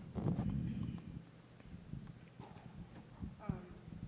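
Faint, low-level speech with a few light knocks and bumps scattered through it.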